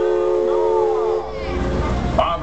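The riverboat's steam whistle blowing a steady chord of several tones, then cutting off about a second in. It sounds as the boat gets under way.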